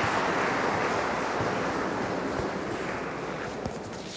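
Congregation applauding the end of the homily in a cathedral, the applause dense at first and gradually dying away.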